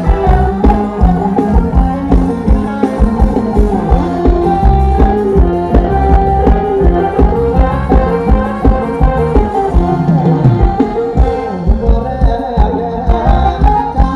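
Thai ramwong dance music played by a band: a steady, driving drum beat with a melody over it.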